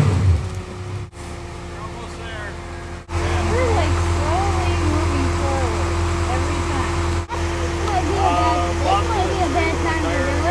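Mud-bogging Jeep Wrangler's engine, its revs falling away at the start. After abrupt breaks, a steady low engine drone runs under the voices of onlookers talking.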